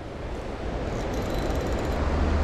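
Steady rushing outdoor noise, growing slightly louder, with a low steady hum joining about one and a half seconds in.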